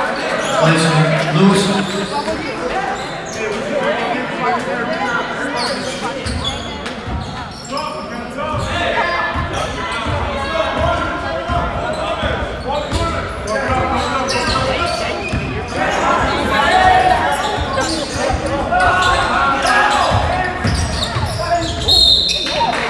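A basketball being dribbled on a hardwood court, with repeated thuds from about six seconds in, over steady chatter from spectators' voices in the gym.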